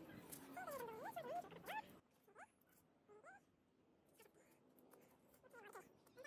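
Near silence, with a few faint short animal calls that rise and fall in pitch, most of them in the first two seconds and two more a little later.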